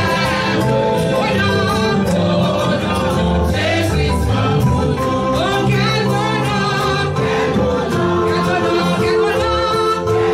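A woman singing a gospel praise song into a microphone, amplified through the church sound system, over steady instrumental accompaniment.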